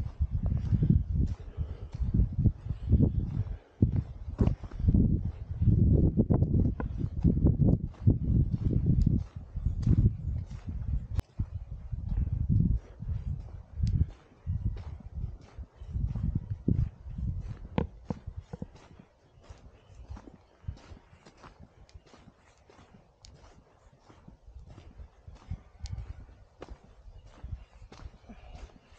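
Footsteps on a wet gravel road at a steady walking pace, about two steps a second, with a heavy low rumble on the microphone over the first half.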